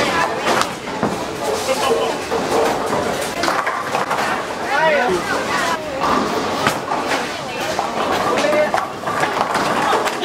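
Voices shouting and exclaiming in a bowling alley over a steady din of bowling balls rolling down the lanes and pins clattering. One voice calls out in a rising and falling shout about five seconds in.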